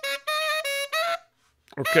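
Soloed saxophone recording played back dry and unprocessed, recorded with a condenser mic straight into the audio interface with no compression or EQ. It plays short detached notes at about the same pitch. A half-second gap follows just after a second in, then a note scoops up into pitch near the end.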